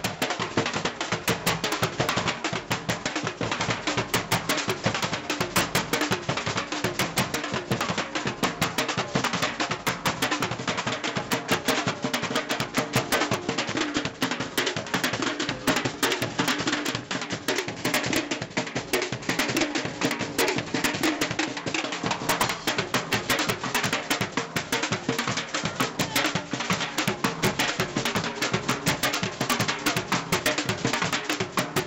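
A street percussion band playing drums on the move: a fast, unbroken rhythm of many rapid strokes.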